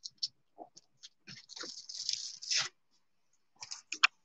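Paper being pressed and rubbed onto an acrylic-painted gelli plate and peeled off. There is a crackly paper rustle lasting about a second in the middle, with scattered light clicks before and after it.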